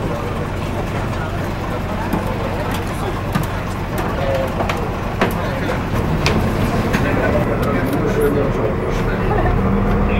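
An airport apron bus's diesel engine runs steadily, then grows louder with a rising tone about six seconds in as the bus pulls away. Muffled voices can be heard over it.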